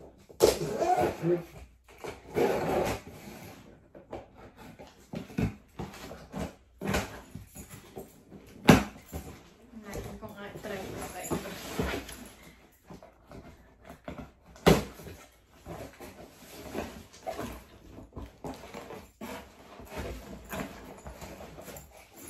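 Long cardboard shipping box being handled and shifted on a bed, with rustling of cardboard and bedding and a few sharp knocks, the loudest about nine and fifteen seconds in.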